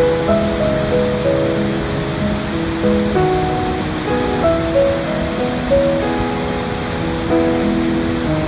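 Steady rush of a large waterfall, an even wash of falling water, with background piano music playing over it.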